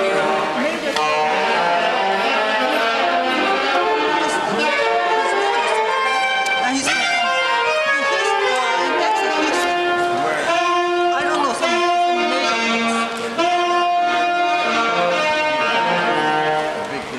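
Live saxophone playing a slow melody of long held notes, with short slides between some of them.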